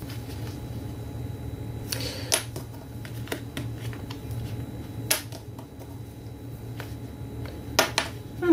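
Hands handling a paper card with ribbon and lace on a tabletop: a few soft, scattered clicks and rustles over a steady low hum.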